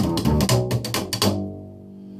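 Upright double bass played slap style: quick plucked notes in G, with sharp clicks from the strings slapping against the fingerboard. This is the close of a slap-bass ending lick. The slapping stops a little over a second in, and a last low note rings out and fades.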